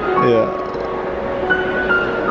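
Solo grand piano played live, a melody of held, ringing notes, with a voice briefly heard over it.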